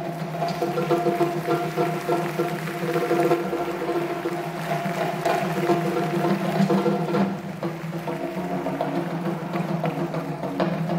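Several marimbas playing together in held chords, each note sustained by rapid rolling strokes, with the harmony changing a few times.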